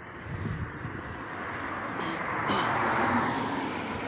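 A car passing on a nearby road: tyre and engine noise swelling to a peak about three seconds in, then easing off.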